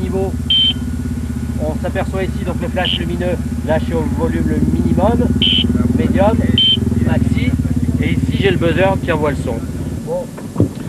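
Sentinel rally warning box sounding short, high, steady beeps, four of them, while its level is set by hand; the rally car's engine runs steadily underneath.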